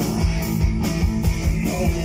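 Live rock band playing loudly: electric guitar, bass guitar and drum kit, with a steady drum beat.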